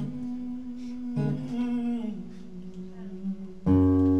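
Steel-string acoustic guitar played live: soft picked chords ring and change, then a much louder strummed chord comes in near the end.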